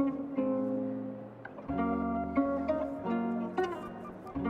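Background music: plucked guitar playing a run of held notes and chords.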